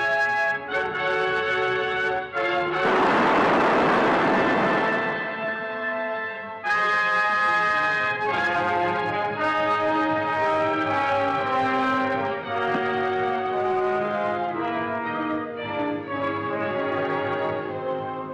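Orchestral film score led by brass, playing a run of held chords. A loud burst of noise swells in about three seconds in and lasts about two seconds.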